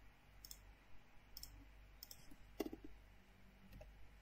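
Faint, scattered clicks from a computer keyboard and mouse as a number is typed and edited, about five separate clicks over the few seconds.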